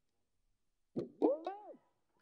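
Bhapang, the Mewati single-string plucked drum, plucked three times in quick succession starting about a second in. The pitch of each note swoops up and then falls away as the string is tightened and let go.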